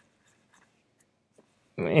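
Near silence with a few faint, brief clicks, then a man's voice starts speaking near the end.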